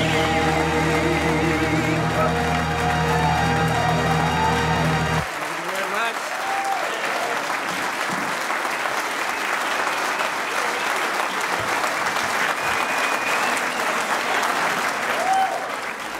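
A song with backing music, sung by a man, ends abruptly about five seconds in. After that, a room full of people applauds steadily.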